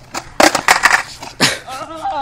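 A skateboard clattering onto concrete as a trick is bailed: a run of sharp clacks about half a second in, another hard knock around a second and a half as the rider hits the ground, then a person's voice near the end.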